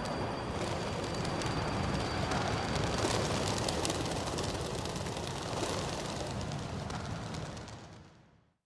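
Low rumbling noise with a faint steady high whine, fading out near the end.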